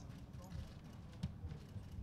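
Faint, indistinct chatter of people talking, over a low rumble, with a few light knocks or clicks, the sharpest a little past halfway.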